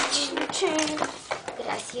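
A child's voice making short play sounds, with light clicks of plastic toys handled on a tabletop.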